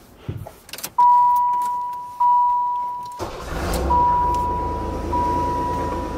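Dashboard warning chime dinging slowly and evenly. At about three seconds the Chevy Lumina van's 3.1 V6 starts and settles into a steady idle, the chime carrying on over it. The engine is running on a newly fitted distributor with the timing just set.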